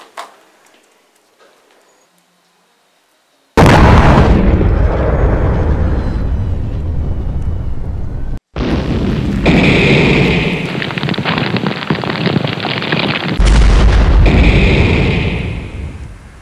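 Explosion sound effects. After a quiet few seconds, a sudden loud blast comes about three and a half seconds in and rumbles on. It cuts out briefly, then a second blast follows with dense crackling debris and fire, fading near the end.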